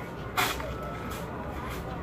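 Steady low outdoor background rumble, with one short sharp noisy sound, like a scrape or clank, about half a second in.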